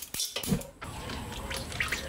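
Cooking oil poured from a plastic bottle into a carbon-steel wok, glugging and splashing onto the pan.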